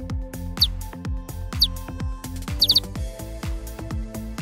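Electronic dance music with a steady kick-drum beat and hi-hats. Short high falling chirps sound about a second apart, then a quick run of three or four of them about two-thirds of the way through.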